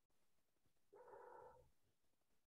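Near silence, broken about a second in by one faint, brief pitched sound lasting under a second.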